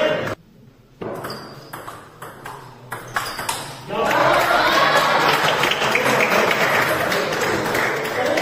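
A table tennis ball clicking off bats and table in a quick rally for about three seconds. About four seconds in, a crowd of spectators breaks into loud, overlapping voices that carry on to the end.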